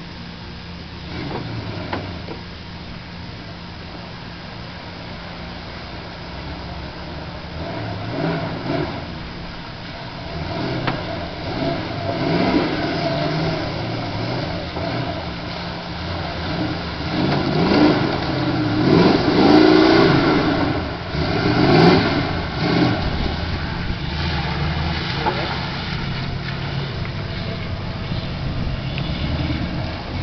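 Big-block Chevy 454 V8 in a lifted 1985 GMC 4x4 pickup revving as the truck ploughs through a deep mud puddle. The engine climbs and falls in pitch and is loudest about two-thirds of the way in, then runs more steadily as the truck comes out onto dry ground.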